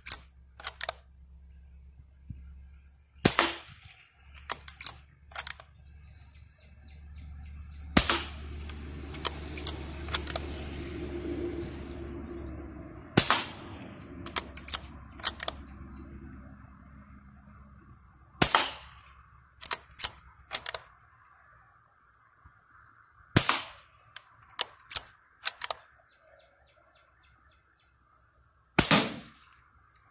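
.22 rifle firing single shots at a steady pace, about one every five seconds, seven in all, each crack followed by a few fainter clicks and knocks. A low steady noise swells and fades between the third and fifth shots.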